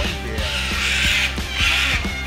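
Background music with a steady beat and bass, over which come two harsh, cawing calls from Papuan hornbills in the aviary: a longer one about half a second in and a shorter one near the end.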